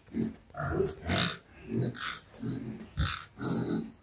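Pig grunting in a quick series, about two short grunts a second, during mating.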